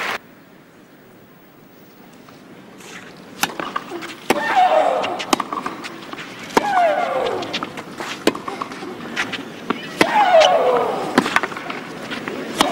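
Tennis rally on a clay court: the ball is struck back and forth, a sharp racket hit about once a second. Three of the hits are followed by a player's loud shriek that falls in pitch. It starts after about three quiet seconds of crowd hush.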